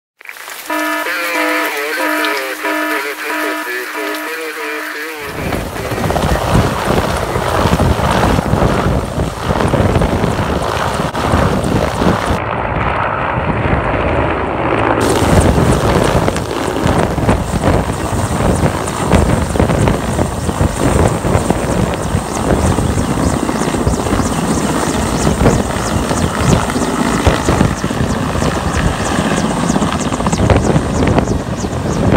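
A short musical intro for about the first five seconds, then a large helicopter passing low overhead: loud, steady rotor and engine noise for the rest.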